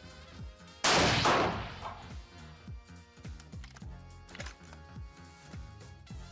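A single shot from a bolt-action rifle about a second in, echoing briefly off the walls of an indoor range. A fainter sharp sound follows a few seconds later, all over background music with a steady beat.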